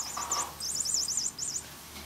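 Toy flying mouse giving off its electronic noise: a rapid series of high-pitched chirps that stops a little under a second in.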